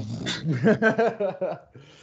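Men laughing: a run of short rising-and-falling laughs that dies away near the end.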